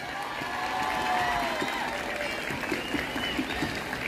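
Crowd applauding steadily, with a few voices calling out over the clapping.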